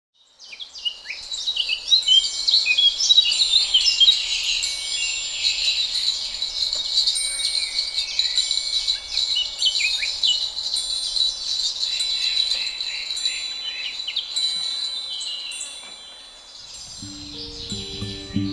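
Dense chorus of birdsong, with many quick chirps and whistles and thin high ringing tones among them, fading in over the first two seconds. Near the end, low repeated instrument notes begin the music.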